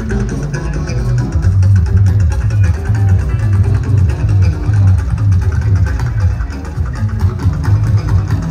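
Juju band music: electric guitars over a heavy, steady bass line with a dense percussion rhythm.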